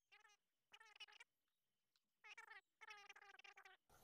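A cat meowing faintly four times, the last call the longest.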